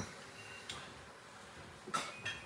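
Quiet kitchen room tone with a faint click about two-thirds of a second in and another near the end.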